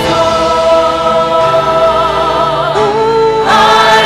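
Mixed church choir of men and women singing long held chords, with the harmony moving about three seconds in and the singing swelling louder just before the end.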